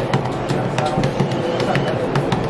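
Hands patting and slapping corn masa into tortillas on a paper sheet over a wooden board, a quick uneven run of soft slaps: the hand-patting noise typical of Nicaraguan tortilla making.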